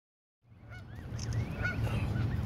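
Newly hatched Canada goose goslings peeping: short chirps that rise and fall, over a low steady rumble. The sound starts about half a second in.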